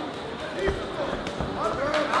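Two dull thuds a little under a second apart, kickboxing strikes landing on a fighter in the ring, with crowd voices around them.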